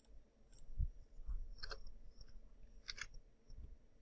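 A few faint computer mouse clicks, scattered and brief, the clearest about one and a half seconds in and near three seconds, with a couple of soft low thumps in between.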